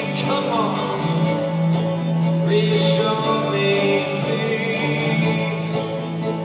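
Live folk band and string orchestra playing an instrumental passage: acoustic guitar and mandolin plucking over held string notes, recorded on a phone from the audience.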